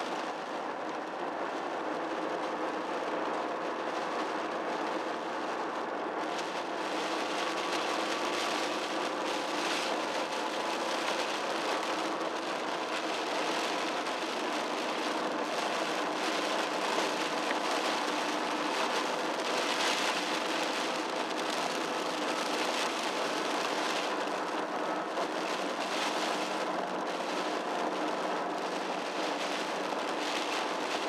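Steady car interior noise while driving on a wet road: an engine drone under tyre hiss that swells and fades a few times.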